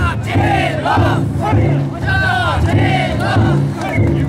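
A large group of men shouting festival calls together, a string of rising-and-falling shouts one after another over a dense crowd din.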